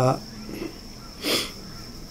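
A man's short, sharp breath in through the nose about a second in, during a pause between spoken phrases. A thin, steady, high-pitched insect trill runs underneath.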